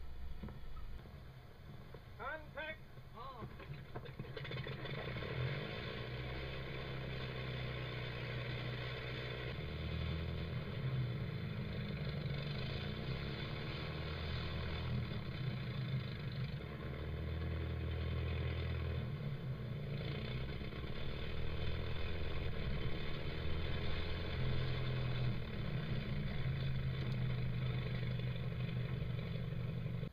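The water-cooled Curtiss OX-5 V8 aero engine of a delta-wing aircraft, run on the ground for a test. It picks up about four seconds in and then runs steadily, its pitch shifting up and down in steps as the throttle is worked.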